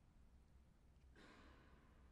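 Near silence, broken about a second in by one faint, short breathy exhale that fades away.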